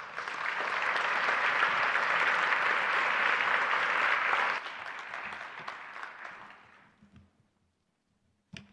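Audience applauding: the clapping swells quickly, holds for about four seconds, then drops and dies away by about seven seconds in.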